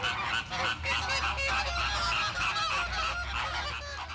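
A flock of flamingos honking, many short calls overlapping in a continuous chorus.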